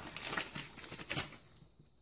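Crinkling, rustling handling sounds as diced ham is spread by hand over a pizza in a cast iron skillet, with one sharper crackle just after a second in. The sound stops after about a second and a half.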